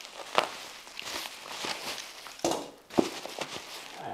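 Bubble wrap rustling and crinkling as it is pulled off a boxed package by hand, with a few sharp cracks.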